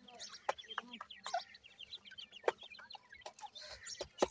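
Young grey francolin (Sindhi teetar) chicks peeping in many quick, short chirps, broken by a few sharp taps, the loudest about halfway in, as the birds peck at the dirt in their basin.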